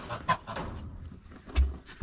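Poultry calling briefly a few times among small clicks, then a knock and a low rumbling thump about one and a half seconds in.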